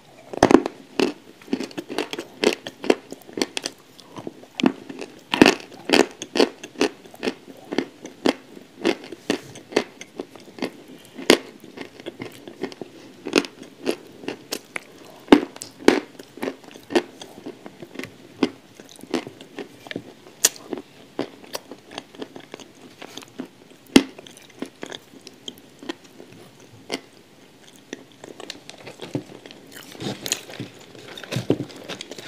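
Close-miked biting and chewing of hard clay coated in wet grey clay: an irregular run of sharp crunches, several a second, with a few louder bites standing out.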